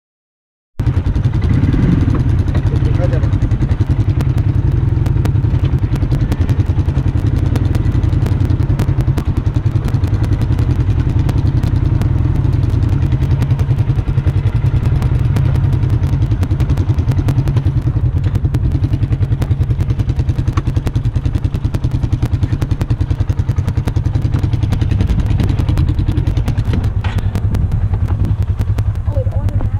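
Utility task vehicle (side-by-side) engine idling steadily up close, starting suddenly about a second in.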